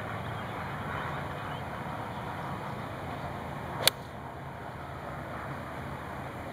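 A golf club striking a ball once, a single sharp click about four seconds in, over a steady low background rumble.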